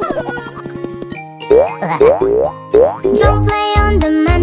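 Children's cartoon music with three rising 'boing' sound effects from about a second and a half in, a little apart. A fuller, bouncy backing with a beat comes in near the end.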